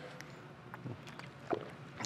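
Faint room tone with a few soft, brief clicks.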